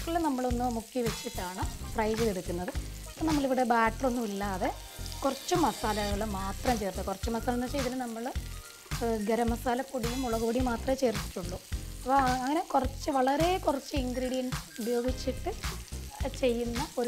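Cauliflower florets frying in oil in a pan, sizzling as they are stirred with a spatula, with scrapes and clicks against the pan. A pitched sound that wavers up and down in pitch runs over the frying much of the time.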